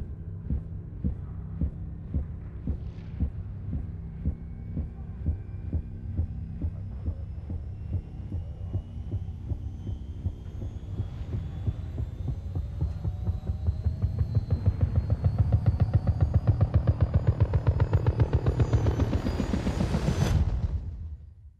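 Trailer sound design: a low, heartbeat-like pulsing throb with a hum under it. The thuds speed up and swell from about two-thirds of the way in, under thin high tones that slowly climb in pitch. It peaks in a loud hit near the end.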